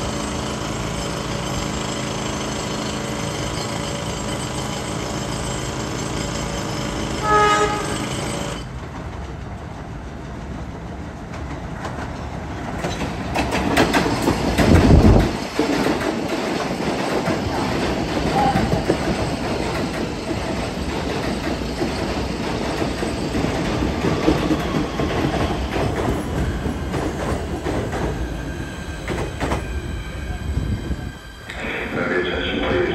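PATH Kawasaki PA-5 train approaching and pulling into the station. A steady hum is broken about seven seconds in by a short horn blast. The wheel and motor noise then builds, is loudest as the train passes close about halfway, and goes on with wheels clicking over rail joints as it runs along the platform.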